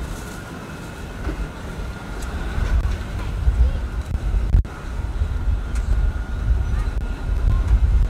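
Outdoor street ambience made up mostly of an uneven low rumble, with faint voices in the background.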